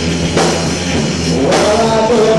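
Live rock band playing loud: distorted electric guitars over a drum kit, with two hard accents about half a second and a second and a half in.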